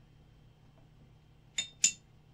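Two light clinks about a quarter second apart, near the end, as a paintbrush taps against the watercolour palette.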